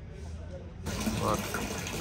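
Water gushing and splashing into a tiled fish pool, cutting in suddenly about a second in, with voices faintly behind it.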